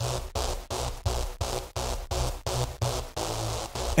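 Synthesizer part playing short repeated notes, about three a second, with a heavy sub-bass layer under it. The layer comes from the Leapwing Audio Rootone subharmonics generator's Synth Bass Thick preset, which makes the synth sound thicker.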